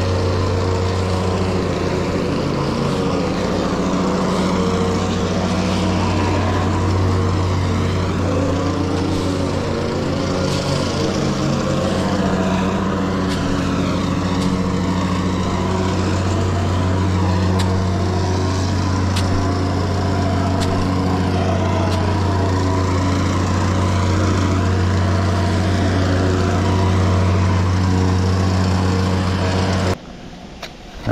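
A small engine running steadily at one constant speed, with the scrape of a metal landscape rake through loose crushed-stone base.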